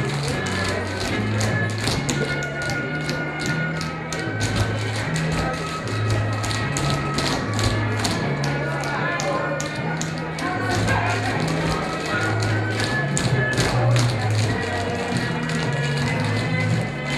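Group tap dancing: many tap shoes clicking in quick, dense runs, in time to music with a steady, repeating bass line.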